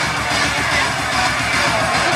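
Loud music with a steady beat playing over the arena's sound system.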